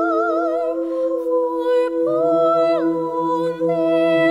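A cappella vocal ensemble singing a Christmas carol in close harmony, holding sustained chords with vibrato in an upper voice. Low bass voices enter about two seconds in.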